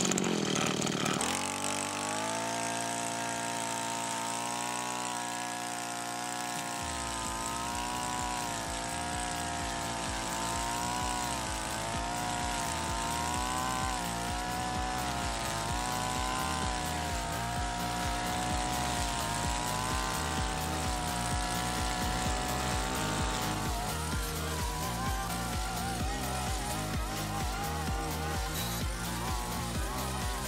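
Backpack brush cutter's small two-stroke engine revving up, then running at high revs with its pitch rising and falling as the nylon-cord head cuts through tall grass. Background music with a beat runs alongside from a few seconds in.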